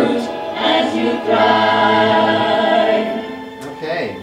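Two women singing together without accompaniment, holding one long note through the middle before breaking off near the end.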